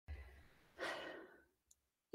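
A woman drawing one short, audible breath about a second in. A faint low thump comes at the very start.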